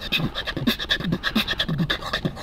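Human beatboxing: a rapid stream of mouth clicks and snare-like hits over short, deep hummed bass notes.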